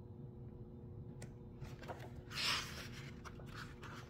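A page of a picture book being turned by hand: a brief papery swish about halfway through, with a faint click before it and small handling ticks after, over a low steady hum.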